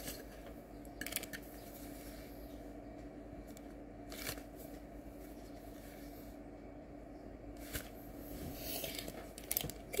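Quiet handling noise: a few brief rustles and taps as a cotton-yarn net crossbody bag and its paper hang tag are moved about, over a faint steady hum.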